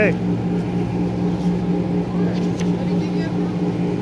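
Electric blower fan inflating a bouncy inflatable arch, running with a steady hum.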